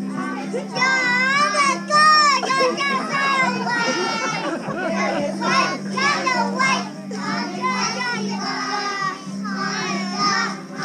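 Many young children's voices at once, chattering and calling out over each other, with a steady low hum underneath.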